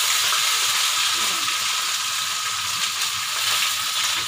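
Chopped onions and green chillies frying in hot oil in a kadai, a steady sizzle.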